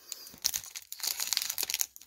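The wrapper of a baseball card pack crinkling as fingers peel it open, in two spells of crackling with a short pause about a second in.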